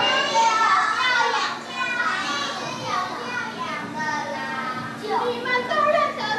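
A group of children's voices, high-pitched and overlapping, chattering and calling out together, over a steady low hum.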